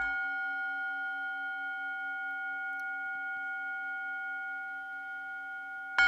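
A singing bowl is struck once and rings on with a low, slowly wavering hum under several clear higher tones, fading gently. It is struck again right at the very end. It marks the close of a guided meditation.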